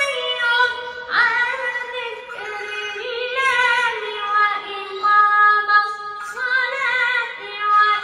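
A boy reciting the Quran in a melodic tajweed style, drawing out long held notes whose pitch wavers in ornaments, with short breaks for breath.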